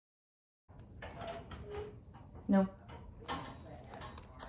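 Wire dog crate's metal gate clinking and rattling as a hand works it, in a string of light metallic clicks starting just under a second in, with a sharp spoken "No" about two and a half seconds in.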